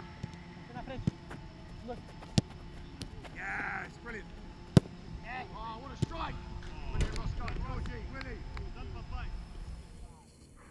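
Footballs being kicked in a shooting drill: several sharp thuds of boot on ball and ball on keeper or goal, the loudest about halfway through. Shouting voices come in between the kicks.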